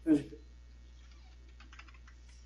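Faint clicking of computer keys tapped in a quick series about a second in, as someone tries to advance the slideshow.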